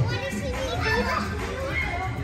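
Children playing and calling out, their voices rising and falling over a steady background hubbub.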